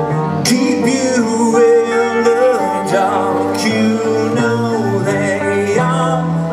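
A live rock band playing: electric guitar with a male voice singing over it and a few cymbal or strum accents.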